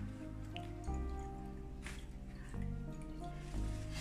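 Background music: sustained chords that change every second or so, with a few faint clicks.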